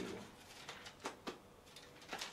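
Pages of a thick Bible being leafed through by hand: a few short, soft paper flicks.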